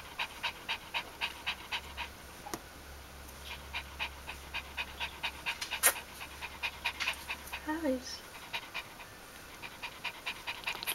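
A Bichon Frisé mother, days after whelping, panting rapidly at about three to four breaths a second, with a short pause early on. A sharp click comes about six seconds in, and a short gliding voice-like sound near the end.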